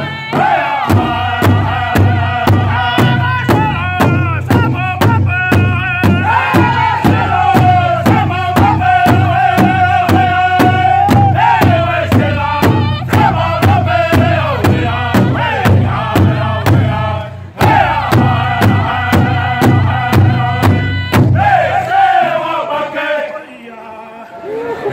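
Southern-style powwow drum group singing a trot song: several voices singing together in a high, strained style over a fast, steady beat struck on a large shared hand drum. Drum and voices stop briefly about two-thirds through, then resume; near the end the drumming stops and the singing trails off as the song ends.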